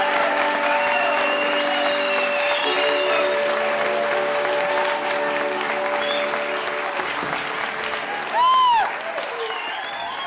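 Audience applauding over a held accordion chord that shifts about two and a half seconds in and stops about seven seconds in. Near the end a loud rising-and-falling whoop from the crowd cuts through, the loudest sound here.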